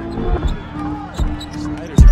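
Basketball game sound from the court: a ball bouncing on the hardwood floor a couple of times over arena crowd noise.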